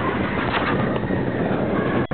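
Big Thunder Mountain Railroad mine-train roller coaster running along its track at speed, a steady loud rumble and rattle with wind on the microphone, and a knock about half a second in.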